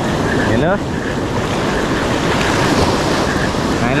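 Surf breaking and washing up a sand beach: a steady rush that grows brighter about halfway through.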